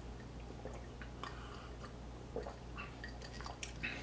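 Faint wet mouth sounds and small lip smacks of someone tasting a sip of tequila, in scattered soft clicks.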